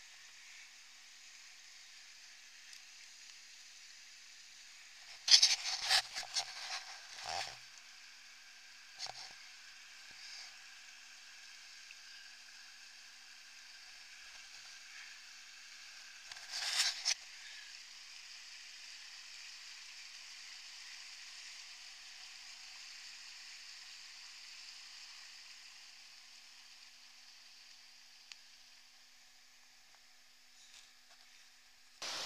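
Faint, steady hiss of a rushing creek, with clusters of knocks and scrapes about five to seven seconds in and again around seventeen seconds as the log is crossed on microspikes.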